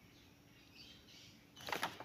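Paper of a workbook being handled and shifted: a faint sliding rustle, then a quick run of soft crackles near the end.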